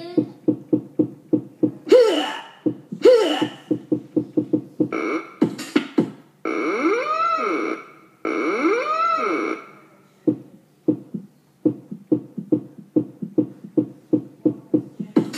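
Electronic keyboard playing a steady programmed drum beat. Over it come two sweeping sounds a few seconds in, then two long synth tones in the middle that each slide up and back down in pitch.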